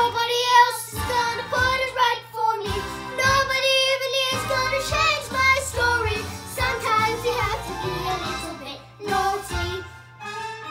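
A young girl singing a show tune over a recorded musical backing track, ending on a held note near the end.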